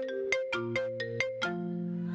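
Marimba struck with mallets, playing a quick melody of single notes, several a second, each ringing on, over lower notes held beneath.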